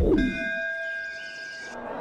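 A single bell-like chime, struck once, its several pitches ringing on together for about a second and a half before dying away.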